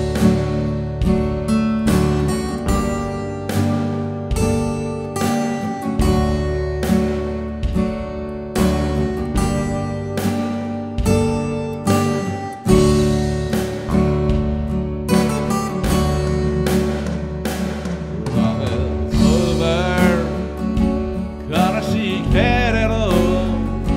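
Instrumental intro of a slow pop ballad played by a small band: strummed and picked steel-string acoustic guitars, one a Taylor Koa K14ce, over electric bass and an electronic drum kit keeping a steady beat. Near the end a wavering melody line enters.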